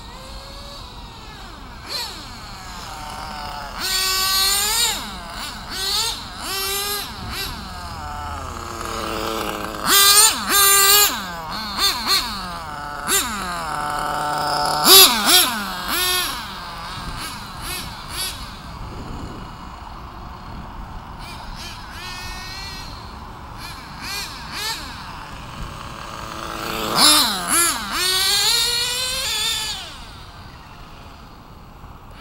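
Kyosho GT2 radio-controlled car driven in bursts, its motor whining and sweeping sharply up and down in pitch as it speeds up, slows and passes close by. The loudest passes come about ten, fifteen and twenty-seven seconds in.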